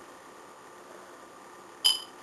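Faint steady room hiss, then near the end a single sudden sharp click with a brief high ring.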